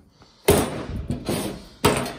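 Metal clanging against sheet steel: a sharp clang about half a second in that rings on, then a second clang near the end.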